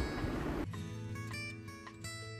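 Background instrumental music with a plucked-string melody, notes changing every few tenths of a second. It is preceded by a short stretch of noise in the first half second.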